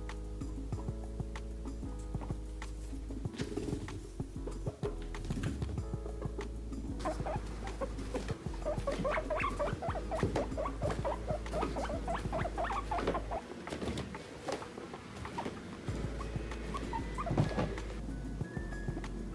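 Guinea pigs squeaking in many quick, short calls for several seconds in the middle, over background music.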